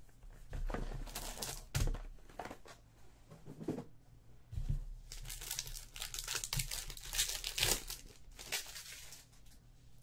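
A trading-card box and its pack wrapper being opened by hand: a string of short crinkles, rustles and tearing sounds, busiest in the second half.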